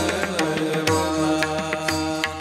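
A group of men singing a Varkari bhajan together over a steady low accompaniment, with taal hand cymbals struck in time.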